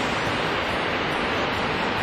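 Steady, even rushing of Niagara Falls' water pouring over the brink.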